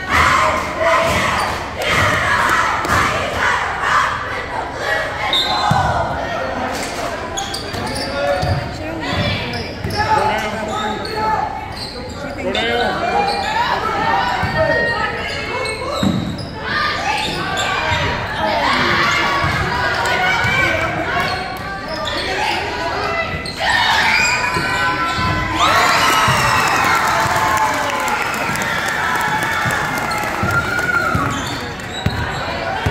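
A basketball bouncing on a hardwood gym floor, heard as several scattered thuds, under continual crowd voices and shouting in a large echoing gym. The voices swell louder near the end.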